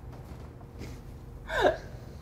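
Soft laughter after a joke: quiet breaths, then a short breathy laugh with falling pitch about one and a half seconds in, over a low room hum.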